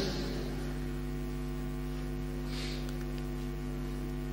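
Steady electrical mains hum from the microphone and recording chain: a low buzz with many evenly spaced overtones. A faint soft hiss comes about two and a half seconds in.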